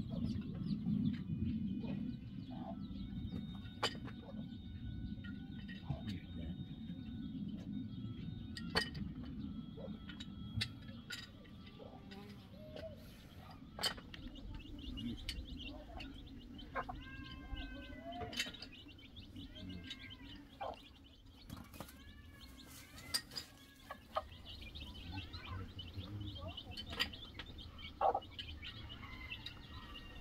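A hen and her chicks calling, with a run of short arched calls about halfway through and more short high calls near the end. Underneath is a low steady rumble with scattered sharp clicks.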